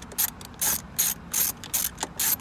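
Ratchet socket wrench with an extension clicking in short bursts, roughly three a second, as it is worked back and forth to undo a 10 mm bolt.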